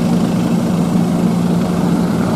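An engine idling steadily, an even low hum that holds one pitch throughout.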